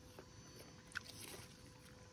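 Near silence: faint outdoor background, with one small click about a second in.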